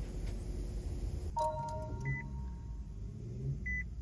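First-generation Nissan Leaf's chimes: a click about a second in, followed by a fading two-pitch tone, then short high beeps repeating about every second and a half, over a low steady rumble.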